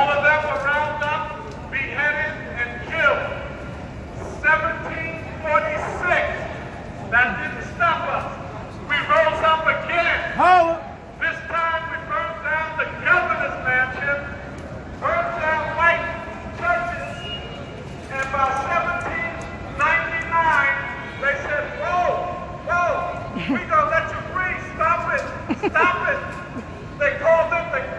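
A man speaking at length to a crowd, in continuous phrases with short pauses.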